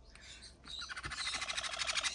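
Young conure chicks giving a raspy, rapidly pulsing chatter that starts about half a second in and keeps going.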